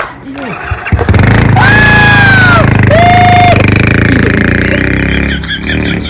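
Small motorcycle engine revved up loudly about a second in and pulling away, its sound easing off near the end as it rides off. Two long drawn-out shouts ring out over the engine, one about a second and a half in and a shorter one about three seconds in.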